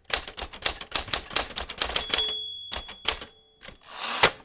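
Typewriter keys striking rapidly for about two seconds, then the typewriter's bell rings once, followed by a few more key strikes near the end.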